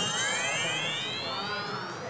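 A comic sound effect: a whistle-like tone gliding steadily upward for about two seconds, laid over the eating scene.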